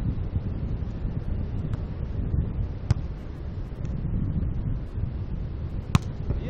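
Wind buffeting the microphone, with two sharp slaps about three seconds apart, the second and louder one near the end: a beach volleyball being struck by hand in a rally.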